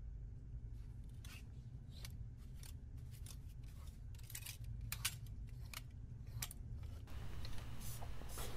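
Scissors snipping sewing threads: a string of sharp, irregular clicks over a low steady hum.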